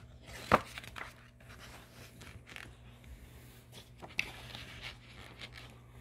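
Pages of a paperback picture book being turned and handled: a sharp paper snap about half a second in, then softer rustles and taps.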